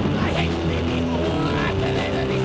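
Hardcore punk song from a demo tape recording, a band playing with distorted electric guitar, continuous and loud.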